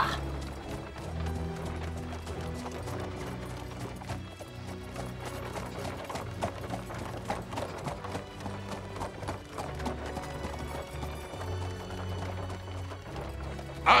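Background music with sustained low notes, over a horse's hooves clip-clopping as it pulls a carriage.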